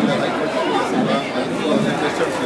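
A man speaking, with background chatter of people in the room.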